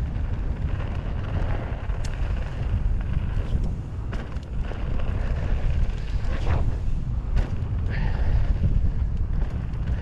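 Wind buffeting an action camera's microphone as a mountain bike descends a dirt singletrack at speed, with tyre rolling noise and a few sharp clicks and rattles from the bike over bumps.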